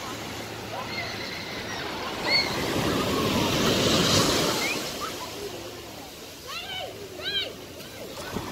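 Ocean surf on a beach: a wave washes in, swelling to its loudest about four seconds in and then fading again.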